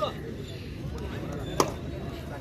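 Low background noise at an outdoor match with spectators, broken once by a single short, sharp smack about one and a half seconds in.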